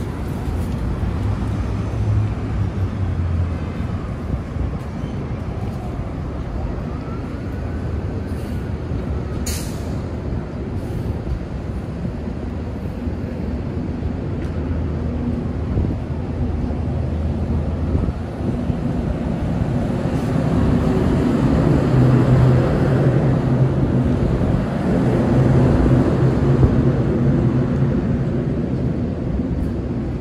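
Downtown street traffic: a steady wash of engine and tyre noise from passing cars and trucks, swelling louder in the second half as a heavy vehicle's low engine hum passes close by. About a third of the way in there is one brief, sharp high-pitched sound.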